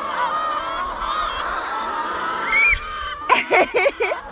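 A large flock of brown laying hens calling together in many overlapping, drawn-out notes, with a louder, choppy burst of sound near the end.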